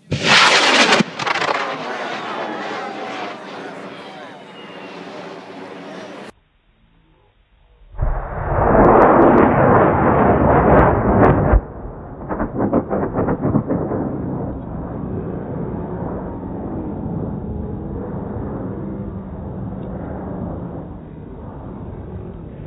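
Cesaroni M2250 high-power solid rocket motor firing at liftoff, heard in clips from more than one camera. Each clip opens with a sudden loud roar, the loudest starting about 8 s in after a brief near-silent gap and lasting about three and a half seconds, then easing to a fainter crackling rumble as the rocket climbs away. This is the flight on which the motor's weak liner let the nozzle end of the casing burn through.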